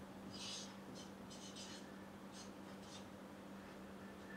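A felt-tip marker writing on a paper sheet: a handful of short, faint strokes as a word is written out.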